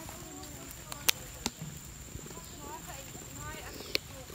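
Three sharp knocks, typical of footsteps on a wooden boardwalk, the loudest about a second in, another half a second later and one near the end, over faint voices talking and a steady high-pitched whine.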